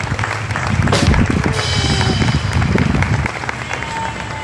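Crowd applause sound effect with music, cutting off abruptly a little over three seconds in.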